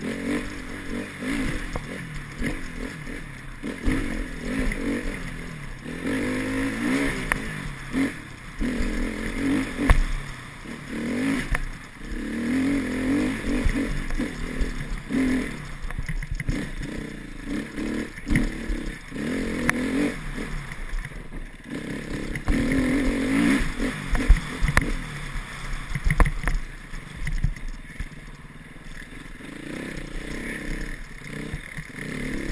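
Enduro motorcycle engine revving up and falling back again and again as it is ridden, heard from the rider's helmet camera, with scattered sharp knocks.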